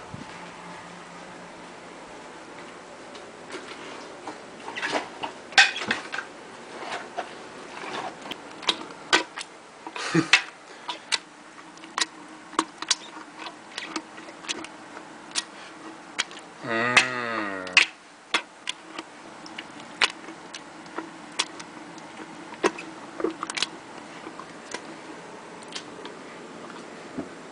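A hand masher pounding cut strawberries and white peaches in a glass jar: irregular knocks and squishes, with sharper taps where it strikes the glass. About 17 seconds in, a brief wavering pitched sound cuts across the pounding.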